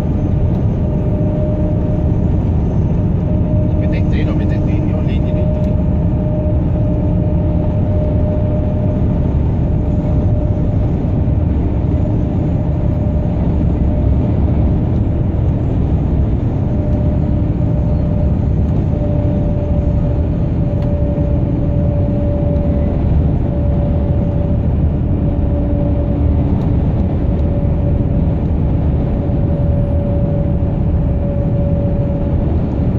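Heavy truck's diesel engine and road noise heard inside the cab while cruising at steady highway speed: a constant low rumble with a steady drone. A few faint rattles about four seconds in.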